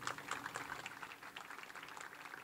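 Faint audience applause: many hands clapping at once in a dense, irregular patter, strongest in the first second.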